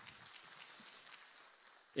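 Faint scattered clapping from an auditorium audience, thinning out near the end.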